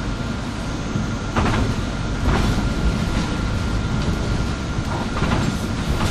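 City bus driving along a street, heard from inside the front of the passenger cabin: steady engine and road rumble, with a few knocks and rattles from the bus body.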